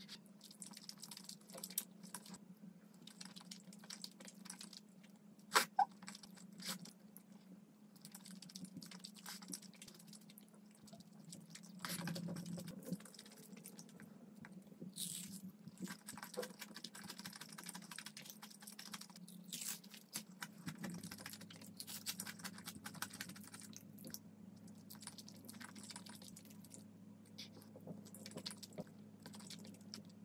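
Close-up eating sounds: slurping and chewing thick noodles in a pollock-roe cream sauce, with many small wet mouth clicks and a few crunchy bites of a fried cutlet. A sharp click stands out about five seconds in.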